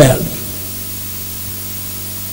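A pause in a man's speech filled by steady hiss from the microphone and recording chain, with a faint low electrical hum under it. The last syllable of his words fades out just at the start.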